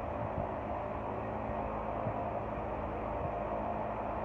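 Two large barn fans running steadily: a constant whooshing hum with a low steady tone. The airflow buffets the microphone with faint low thumps.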